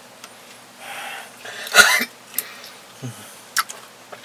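A breath in, then one short, sharp throat-clearing cough about two seconds in, followed by a few light clicks of a metal spoon in a cup.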